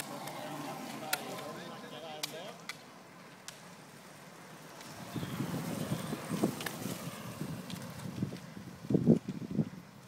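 Outdoor roadside sound with indistinct voices and a few sharp clicks in the first seconds. From about halfway a low rumbling noise sets in, with a louder burst near the end.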